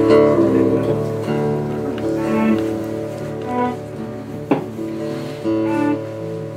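Live acoustic music: two acoustic guitars with a keyboard, chords ringing and slowly getting quieter. There is a single sharp click about four and a half seconds in.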